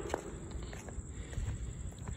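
Footsteps on a concrete sidewalk: a few soft steps about half a second apart, over a low rumble on the phone's microphone.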